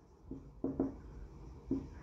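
Marker pen writing on a whiteboard: a few faint, short scratchy strokes.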